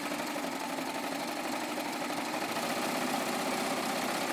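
Serger (overlock machine) running steadily at speed, stitching a bias-binding strap through its binding attachment without a pause.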